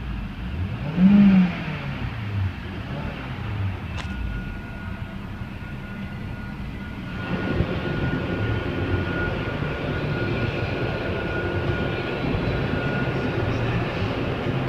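2006 Saab 9-3 2.0L turbocharged four-cylinder engine revved once in Park, its pitch rising and falling about a second in. It then runs on with a thin steady whine from about four seconds in, and the engine sound grows louder from about seven seconds.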